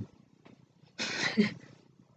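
A woman's brief breathy vocal sound about a second in, ending in a short voiced note, with a faint thump at the very start.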